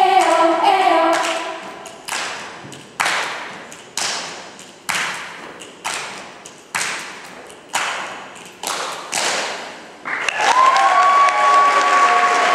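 Girls' a cappella group: the singing fades out about a second in, then about nine sharp body-percussion beats in unison, roughly one a second, each ringing away in the hall. Near the end the voices come back in together on a held chord.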